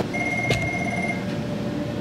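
A high electronic tone sounds for about a second over steady equipment hum, with a single click about half a second in.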